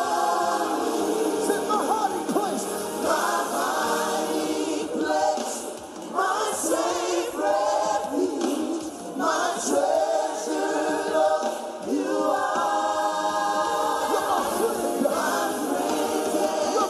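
A choir singing a gospel worship song.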